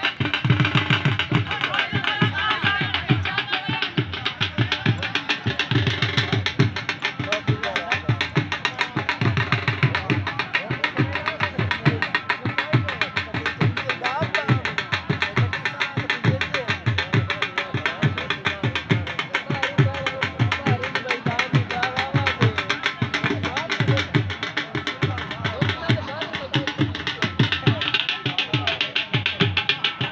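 Music with a steady, repeating drum beat throughout, with voices over it.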